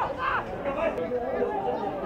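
Several people chattering and calling out, with one brief, louder call just after the start.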